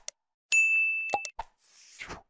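Subscribe-button animation sound effects: a couple of quick clicks, then a bright bell ding that rings for nearly a second, two more pops, and a short airy whoosh near the end.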